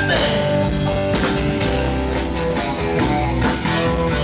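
Live rock band playing: strummed guitars over bass and drums, with regular drum hits.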